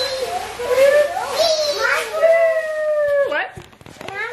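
A small child's high-pitched wordless vocalizing: babbling sounds, then a long held squeal that drops in pitch and stops about three seconds in.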